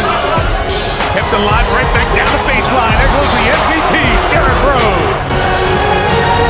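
A basketball being dribbled on a hardwood court during an NBA game, mixed with music and a voice.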